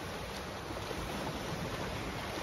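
Swimmers swimming butterfly and churning the water of an indoor pool: a steady wash of splashing, with no single loud event.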